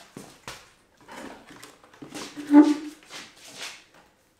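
Dirt bike being heaved up onto a wooden stand on a tiled floor: knocks and scuffs of the bike and stand, with a short strained groan, the loudest sound, about two and a half seconds in.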